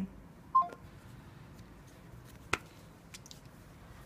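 A brief electronic beep from a Samsung smartphone about half a second in, as a phone call is ended. Then faint room tone with one sharp click about two and a half seconds in.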